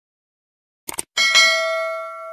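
A quick mouse-click sound effect, then a single bell ding that rings and slowly fades before cutting off suddenly. These are the sound effects of a subscribe end-screen animation clicking the notification bell.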